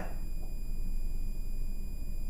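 Room tone: a steady low hum with faint, steady high-pitched whining tones.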